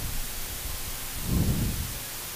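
Steady hiss of a commentary microphone line with no speech, and a faint low swell a little past the middle.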